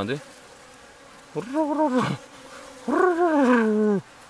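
Steady hum of a colony of Asian honeybees (Korean native bees) massed at their hive entrance, shimmering in waves to fend off a hornet. Over it come two drawn-out, wavering 'ohh' sounds from a man's voice, the first at about one and a half seconds in and the second, longer one near the end.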